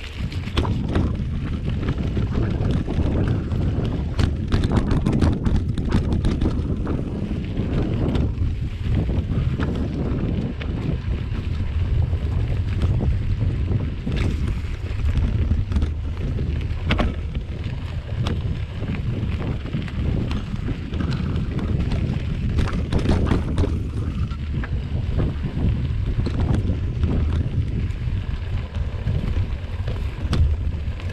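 Mountain bike rolling over a dirt singletrack: steady tyre rumble and rattling of the bike, with wind on the microphone. Clusters of sharper clatters come about four to six seconds in and again around twenty-two seconds.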